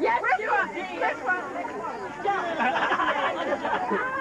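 Chatter of a group of people talking over one another, several voices at once with no single clear speaker.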